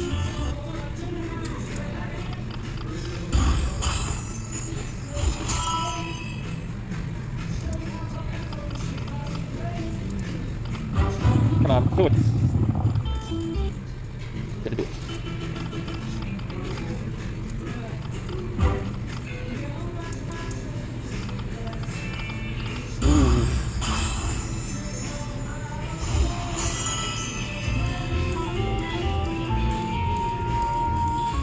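Buffalo Diamond slot machine playing its reel-spin sounds and music over a steady casino din, with louder bursts of machine sound a few times as spins and small wins come up.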